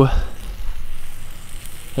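Food sizzling on a grill grate over a campfire, a steady hiss under a low rumble.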